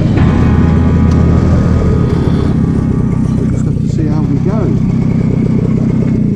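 BSA Bantam's small two-stroke single-cylinder engine running as the motorcycle rides along a street, heard from the handlebars. The engine note drops just after the start and then holds steady.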